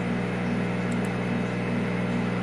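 A steady low machine hum with a faint tick about a second in.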